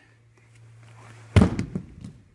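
A person thrown with a hip throw lands on a padded training mat: one loud, sharp slam about one and a half seconds in, followed by a few smaller thumps.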